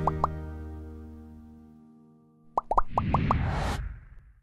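Title-sequence music sting: a held chord rings and fades away over about two seconds, then a quick run of rising pops comes in with a swelling hiss and fades near the end.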